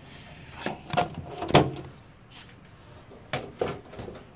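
Light knocks and clunks of tools and parts being handled on a workbench: three close together in the first two seconds, the loudest about a second and a half in, then two more a little after three seconds.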